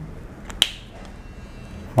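Two quick sharp clicks about half a second in, a faint tick followed at once by a louder snap, over quiet room tone.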